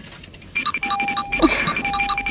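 Bright electronic chime tones starting about half a second in, repeating quickly in a bell-like pattern at several pitches.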